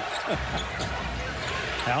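A basketball being dribbled on a hardwood court, with steady arena crowd noise behind it.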